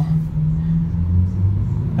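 Lamborghini Aventador's V12 engine running at low speed, heard from inside the cabin as a steady low drone. Its pitch shifts about halfway through.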